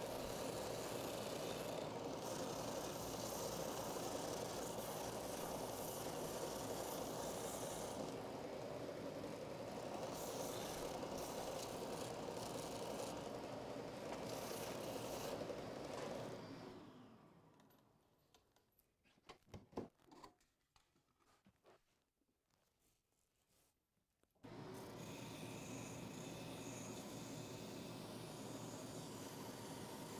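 Benchtop oscillating edge belt/spindle sander running steadily as a wooden template is sanded against it, with a faint motor hum under the sanding. The sound cuts out to silence for about seven seconds past the middle, then the same steady running comes back.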